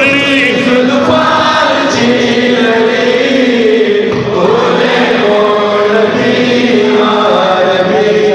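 Male voices chanting a Pashto naat without instruments, in long held notes.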